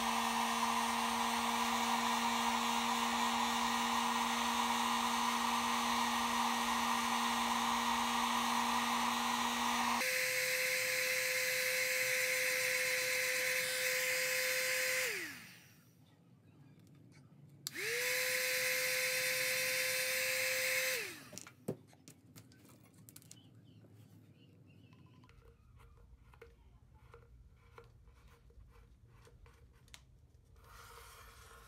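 Heat gun running, a steady fan-motor whine over a rush of hot air, shrinking heat-shrink tubing over soldered LED wires. It is switched off about halfway through and winds down, runs again for about three seconds, then winds down again. Faint small clicks of handling follow.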